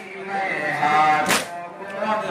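Mourners chanting a nauha lament together while beating their chests in unison, with one sharp slap of hands on chests a little over a second in; the strikes fall about one and a half seconds apart.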